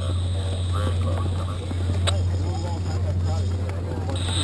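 A steady low mechanical hum under faint distant voices, with a single sharp click about two seconds in.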